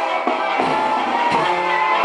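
Mexican banda brass band playing: trombones and clarinet hold sustained chords over drum beats and cymbal strikes.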